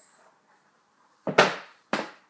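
Two thumps a little over half a second apart, the first the louder, as a pair of trainers is put down.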